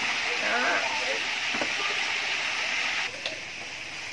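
Chicken wings frying in hot oil in a pan on a gas stove, a steady sizzling hiss that drops away about three seconds in.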